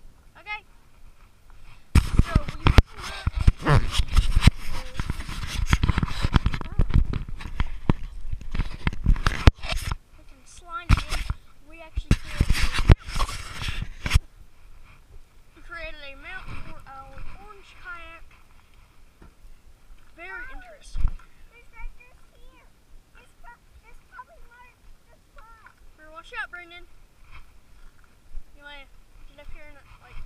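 Loud rubbing, scraping and knocking on an action camera's waterproof case as it is handled, starting about two seconds in and stopping suddenly about halfway through. After that, faint indistinct voices.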